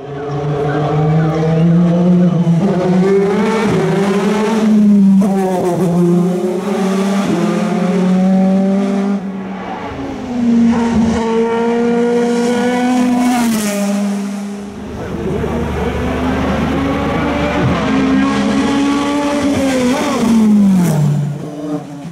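Audi A4 DTM race car's V8 engine at full throttle, its pitch climbing through each gear and dropping at every upshift, with lifts and blips for corners. Near the end the pitch falls steeply as it slows.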